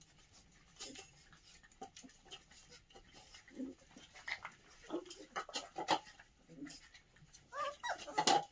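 A litter of puppies eating kibble together from a shared bowl: quiet, scattered chewing, crunching and lapping clicks, with a brief whimper near the end.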